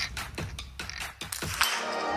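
A biathlon small-bore rifle being handled and worked, giving a run of short, sharp clicks at uneven spacing. Music comes in near the end.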